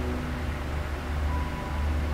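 Steady low hum of room background noise, with a faint brief higher tone about halfway through.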